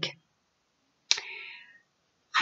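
A single sharp click about a second in, followed by a short fading ring.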